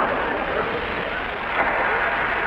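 Studio audience laughing, the laughter softer and fading after a louder peak just before.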